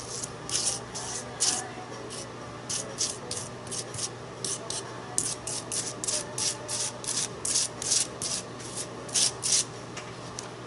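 Small metal palette knife scraping modeling paste across a stencil in a run of short scraping strokes. A few strokes come in the first couple of seconds, then a steadier run of about three a second.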